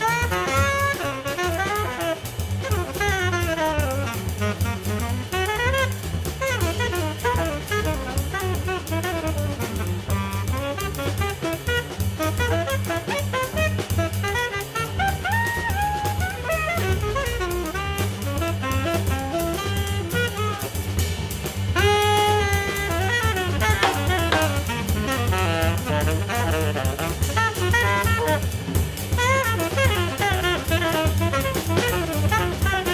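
Jazz trio playing: a saxophone runs through fast improvised lines over double bass and drum kit. The playing grows a little louder about two-thirds of the way in, where the saxophone holds a long high note.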